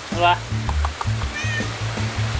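A domestic tabby cat meowing briefly, over background music with a steady bass beat.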